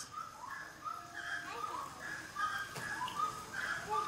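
Monkeys calling: a steady run of short calls, each rising and falling in pitch, several overlapping.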